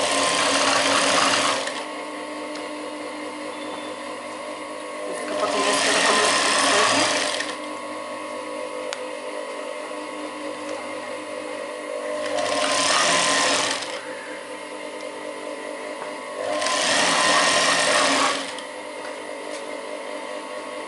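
Industrial single-needle sewing machine stitching in four short runs of about two seconds each, stopping between them. A steady hum carries on between the runs.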